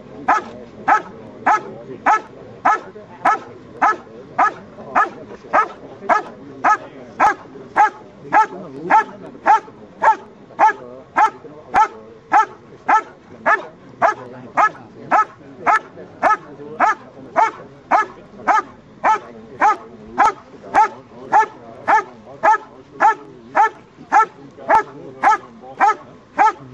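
German Shepherd barking steadily and rhythmically, nearly two barks a second, at a helper in a blind: the hold-and-bark of a Schutzhund protection routine, the dog holding the helper by barking alone without biting.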